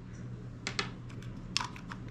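A few light clicks and taps from handling a small plastic light and its USB-C charging cable as the cable is freed and set down on a stone countertop. They come in two small groups, one just under a second in and another a little past halfway.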